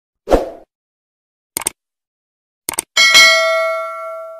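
Subscribe-button animation sound effects: a short thump, two quick double clicks about a second apart, then a notification bell dinging and ringing out for over a second.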